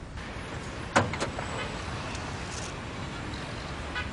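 A pickup truck's door slams shut about a second in, with a second lighter click just after, over a low steady rumble.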